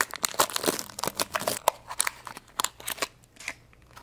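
Clear plastic blister packaging crackling and clicking as it is handled and opened by hand. A dense run of crinkles fills the first two seconds, then single clicks are scattered through the rest.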